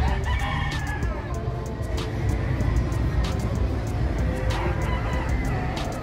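Gamefowl rooster crowing, with one call just after the start and another about two-thirds of the way through, over the steady low rumble of a busy exhibition hall.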